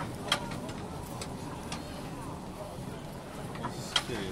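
Indistinct voices over a steady low background rumble, with a few short ticks.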